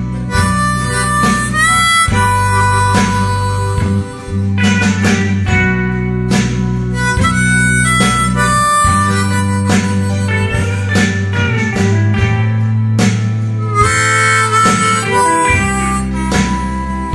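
Diatonic harmonica in G playing a slow melody of held notes, a few of them bent so they slide up into pitch, over a guitar backing track.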